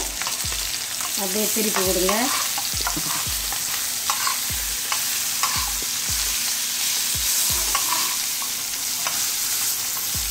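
Small spice-coated fish shallow-frying on a flat iron tawa: a steady sizzle of hot oil, with a spatula scraping and tapping on the pan every half second or so as the fish are turned and moved.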